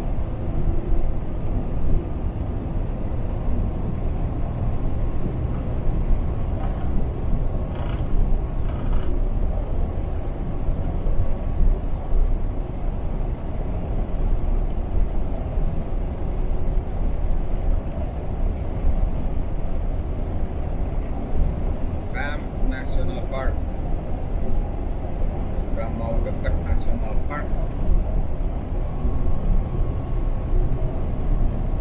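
Steady road and engine rumble heard from inside a semi-truck cab cruising at highway speed, with a few brief voice-like sounds mixed in.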